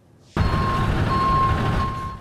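A truck engine running with a reversing alarm sounding a steady high beep over it, cutting in suddenly about a third of a second in.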